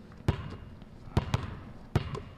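A basketball being bounced on a gym floor before a free throw: a few separate thumps, irregularly spaced.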